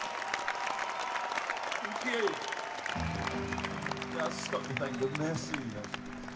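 Concert crowd cheering and clapping with scattered shouts, heard in an audience recording. About halfway through, a low held note from the band's instruments comes in and sustains, as a song starts up.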